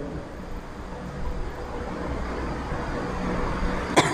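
Road traffic noise: a steady low rumble that slowly grows louder.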